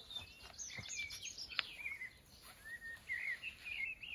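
Wild birds singing, a string of short warbled, chirping phrases one after another. A single sharp click sounds about one and a half seconds in.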